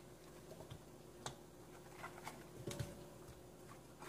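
A few faint, light taps and clicks as pieces of eggplant are laid in a metal wok on top of fish and vegetables.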